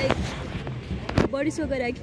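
A woman's voice speaking briefly near the end, with two sharp knocks about a second apart, the first right at the start, over steady outdoor background noise.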